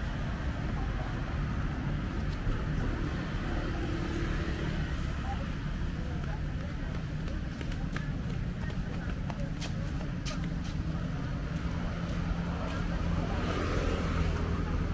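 Outdoor street ambience beside a beachfront road: a steady low rumble of road traffic with indistinct voices of people nearby.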